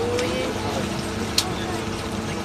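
A boat's engine runs with a steady low hum under people talking, with one sharp click about one and a half seconds in.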